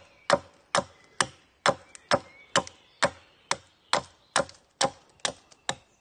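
Hatchet chopping a point onto a wooden stake: a steady series of sharp blows into the wood, about two a second.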